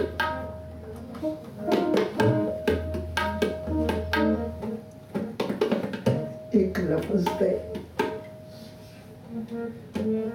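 Tabla played in a quick rhythm of sharp strokes, over a harmonium holding a steady drone note with a moving melody.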